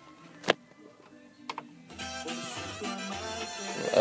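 A sharp click about half a second in, then music starts playing from the newly installed in-dash head unit about two seconds in, with a steady beat and low bass notes.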